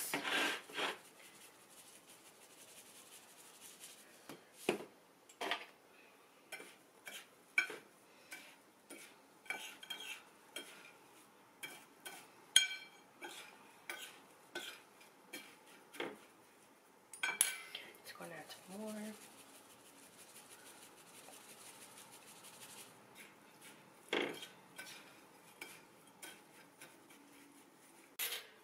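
Metal fork stirring a dry flour and panko breadcrumb coating in a bowl, with irregular light clinks and scrapes of the fork against the bowl, up to about two a second in the first half and sparser later.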